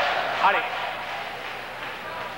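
A man shouts "Allez!" once, about half a second in, over a steady murmur of arena crowd noise that slowly fades.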